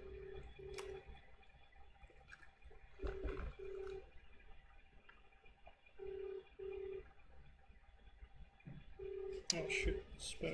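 Australian-style telephone ringback tone on an outgoing call: a double ring repeating every three seconds, four times, the called line ringing unanswered. A few soft clicks and a sharp knock near the end.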